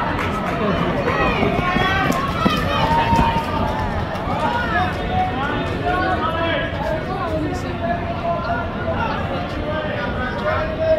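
Indistinct chatter and calls from several people at once over a steady background din, with no single voice standing out.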